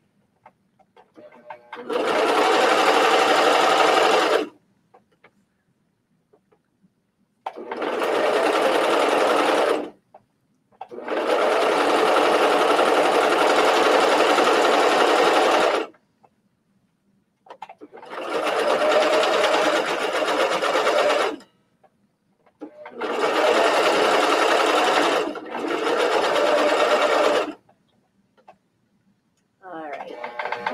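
Coverstitch machine sewing through stretch mesh in five short runs of two to five seconds, with pauses between as the fabric is repositioned; the longest run is near the middle.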